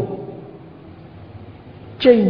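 A pause in a man's speech: faint steady background hiss with a low hum from the recording, after his last word fades out at the start.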